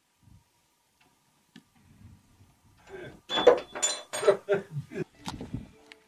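A wooden cell door being unlocked and opened: a loud run of metal clinks, knocks and creaks starting about three seconds in and lasting about three seconds.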